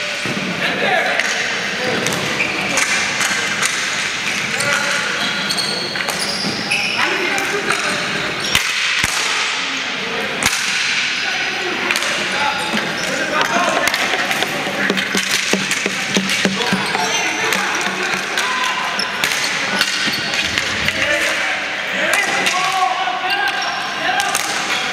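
Ball hockey play in a large arena: sticks clacking on the ball and the hard floor in scattered sharp knocks, mixed with indistinct shouting from players and spectators.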